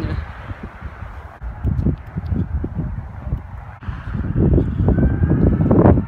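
Wind buffeting the camera's microphone in irregular low gusts, strongest over the last two seconds.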